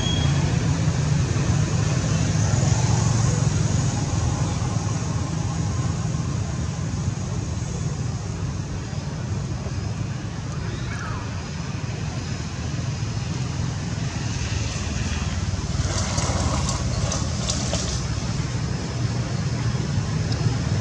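Steady low outdoor background rumble with a hiss above it, and a short cluster of crackles about sixteen seconds in.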